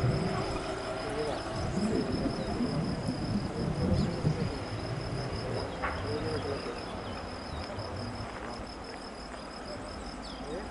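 A cricket-like insect chirring steadily in a high, rapid pulse throughout. Low, uneven rumbling comes and goes in the first half, loudest about four seconds in, then eases off.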